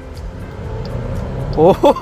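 2023 Jeep Grand Cherokee's 2.0-litre turbocharged four-cylinder engine heard from inside the cabin under hard acceleration, growing steadily louder.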